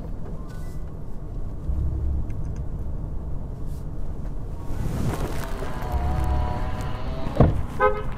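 Low, steady rumble of a car's engine and tyres heard from inside the moving cabin. From about five seconds in a held tone sounds over it, ended by a sharp thump shortly before the end.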